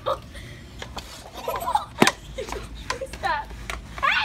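Short bursts of girls' voices and laughter, with a sharp plastic clack about halfway through and a few lighter knocks as a plastic balance board tips and hits a hard floor.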